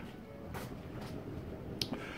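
Low handling noise as a metal blanking plate is turned and offered up to a vehicle bulkhead, with one small sharp click near the end.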